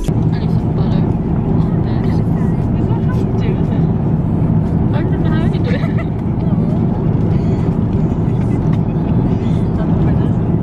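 Steady low drone of an airliner cabin in flight, the even rumble of engine and airflow noise, with quiet talking over it.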